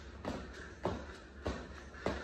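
Sneakers tapping and shuffling on a hardwood floor as the feet step during push-ups: three short thuds a little over half a second apart.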